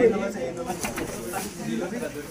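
Indistinct voices of people talking in the room, with a short voiced phrase right at the start.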